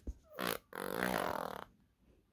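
Baby vocalising: two breathy cooing sounds, a short one and then a longer one of about a second, which stop well before the end.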